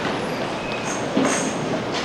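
Steady rushing room noise of a large hall with a congregation, with no single clear event standing out.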